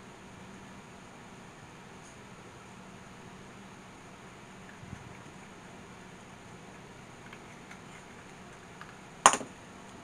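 Steady low room hum, then about nine seconds in a single sharp clack as a pair of pliers is set down on a wooden desk.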